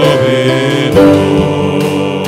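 Live church worship music: voices singing long held notes over band accompaniment, the chord changing about a second in.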